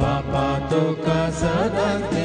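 A woman singing a devotional hymn into a microphone over instrumental accompaniment, with held low notes and a steady beat about every 0.7 seconds.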